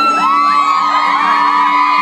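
Concert crowd screaming and whooping: many high voices rise together and hold long cries, over a strummed acoustic guitar.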